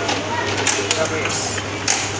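Busy restaurant din: indistinct chatter over a steady low hum, with a few sharp clinks of metal utensils against stainless steel condiment bowls, the loudest near the end.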